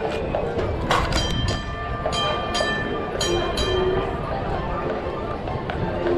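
Horse-drawn streetcar moving along its rails: the horse's hooves clip-clopping and the car running on the track, over street chatter, with a few bright ringing notes between about two and four seconds in.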